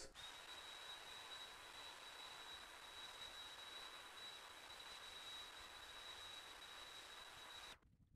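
Hair-dryer brush blowing: a faint, steady rushing hiss with a thin high whine, which cuts off suddenly near the end.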